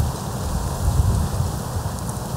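Wind buffeting the camera's microphone: a low, fluctuating rumble under an even hiss.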